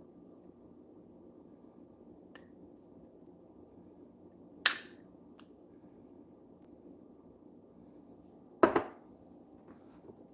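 Metal spoon knocking against a glass bowl as diced onion is spooned in: two sharp clinks about four seconds apart, the first about halfway through, with a couple of fainter taps, over a steady low background hum.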